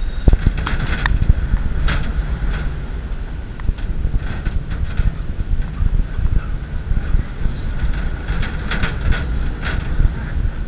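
Wind rushing over the camera microphone on a swinging Star Flyer chair ride high in the air: a steady low rumble and buffeting, with scattered clicks and rattles through it.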